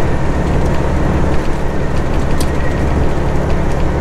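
Steady drone of a semi truck's diesel engine and road noise, heard inside the cab while cruising at highway speed.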